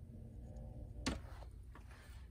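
Quiet room tone with a low hum and one sharp click about a second in.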